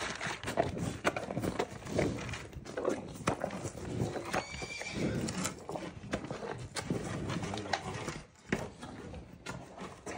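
Holstein steer eating close up from a tray of watermelon and shredded-wheat biscuits: wet crunching and chewing, an irregular run of crunches and clicks.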